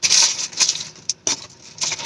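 Paper sandwich wrapper rustling and crinkling as it is handled, loudest at first, with a couple of sharp crackles about a second in.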